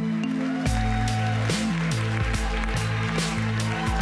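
Pop music with a steady beat: a bass line of held notes moving in pitch under sustained tones, with regular high ticks of a hi-hat-like percussion.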